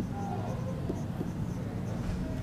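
Faint tapping and scratching of a pen writing on a large interactive touchscreen display, over a steady low hum.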